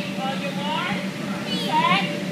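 Children's voices calling and squealing in high, gliding shouts, the loudest near the end, over a steady hum.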